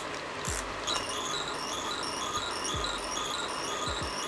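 Battery-operated merry-go-round toy playing a tinny electronic tune, a quick run of short high beeping notes repeating steadily, with a few soft low thumps from handling.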